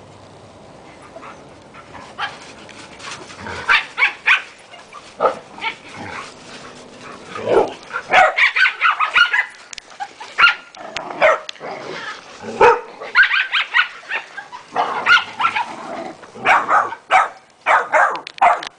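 Dogs barking and yipping in short, sharp bursts as they play-fight. The first few seconds are fairly quiet, then the barking comes thick and fast.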